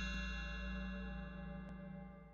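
The ringing tail of a bright, many-toned chime, fading away steadily, over a low steady hum.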